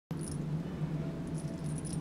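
Faint jingling of a small bell inside a plastic lattice cat toy ball as it is shaken in front of a kitten, heard briefly near the start and again through the second half, over a low steady hum.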